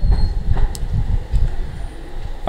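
Low, irregular rumbling thumps picked up by the lectern microphone, easing off near the end.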